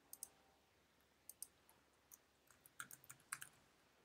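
Faint computer keyboard typing: a few isolated key clicks, then a quicker run of keystrokes in the second half.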